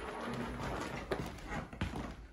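Footsteps of people walking across the floor, with a few soft knocks.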